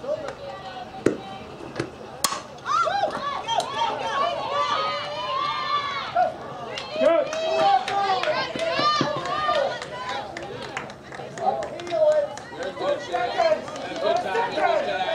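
A sharp crack of a softball bat hitting the ball about two seconds in, followed by many high voices yelling and cheering from the players and spectators.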